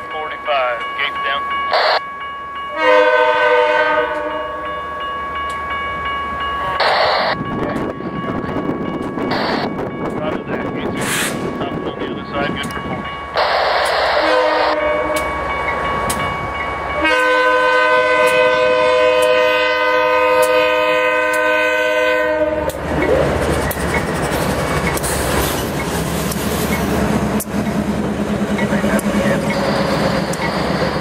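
BNSF GE diesel locomotives, an AC4400CW leading, sounding a multi-tone air horn in a series of blasts for a grade crossing, the last one long, about six seconds. From about 23 seconds in, the locomotives pass close by with a steady engine rumble and wheel noise.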